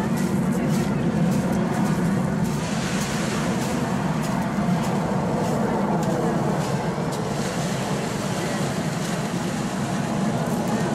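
Red Arrows BAE Hawk T1 jets flying overhead in formation, their turbofan engines giving a steady jet noise.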